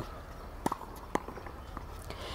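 Two faint, sharp knocks about half a second apart from tennis practice on a hard court, over a low background hum.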